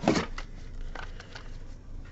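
Trading cards and their packaging being handled: a light rustle with a few soft clicks.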